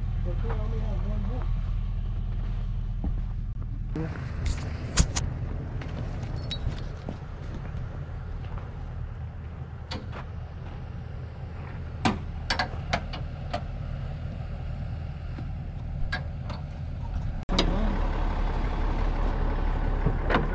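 Pickup truck engine idling steadily, with scattered knocks and clicks over it.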